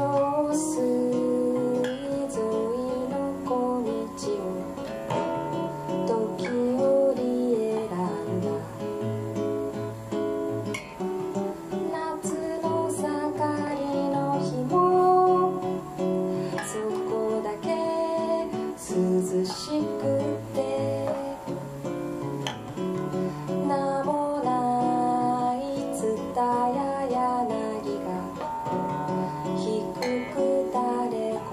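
Nylon-string classical guitar played fingerstyle in a bossa nova rhythm, with a woman singing over it at times.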